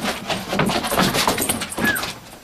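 A dog playing with a tennis ball on a wooden deck: a run of quick knocks and clatters, with a brief high squeal that rises and falls near the end.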